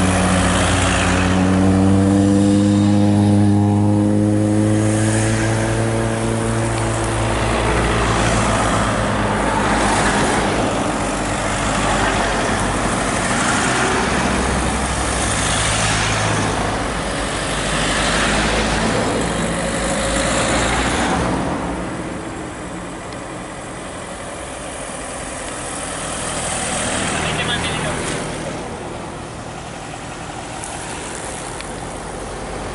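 A convoy of cars driving past close by, one after another. The first car's engine note falls in pitch as it goes by, and the passing noise swells and fades several times before easing off.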